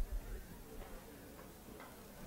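A dull thump at the start, then a few faint, irregular clicks over quiet room tone.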